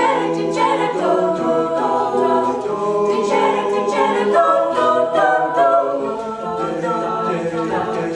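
An a cappella vocal group singing in harmony, several voices holding and moving between chords with no instruments.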